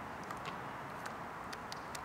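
Faint, scattered light clicks from small plastic wire connectors being handled and pushed together, over a steady low hiss.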